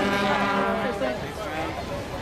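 A horn sounding one steady, level note that stops about a second in, over crowd voices.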